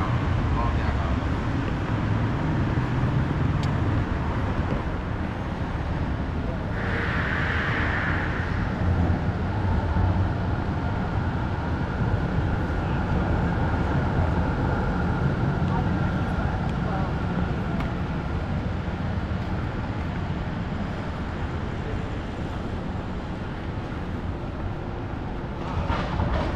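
City street ambience heard while walking along the footpath: steady traffic noise from passing cars. A brief higher-pitched sound stands out about seven seconds in.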